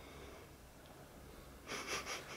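Quiet room tone, then near the end a short, breathy burst of a person breathing out.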